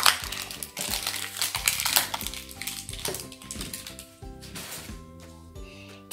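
Light background music with held notes, over the crinkling and tearing of a plastic foil wrapper being peeled off a toy surprise egg; the crinkling is densest in the first three seconds and thins out, and everything grows quieter near the end.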